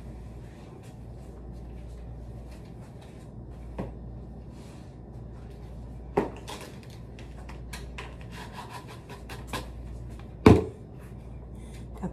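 Scattered clicks and knocks of things being handled and set down on kitchen counters as surfaces are wiped with disinfectant wipes. A louder thump comes near the end, over a low steady hum.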